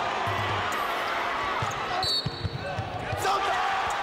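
Game sound from a basketball game in a gym: crowd noise with the ball bouncing on the hardwood floor, and a short high squeak about halfway through.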